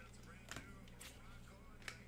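Near silence: a low steady hum with a few faint, short handling clicks.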